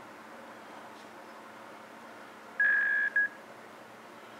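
Electronic beep from a Twist by iSound Bluetooth speaker signalling that it has paired with the phone: one steady tone of about half a second followed by a very short second blip, over faint room hiss.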